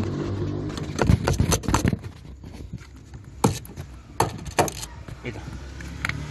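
Several sharp knocks and taps as a hand strikes the housing of a Ford Windstar's inertia fuel-pump cutoff switch to trip it. A quick cluster comes about a second in, then single knocks around three and a half to five seconds in.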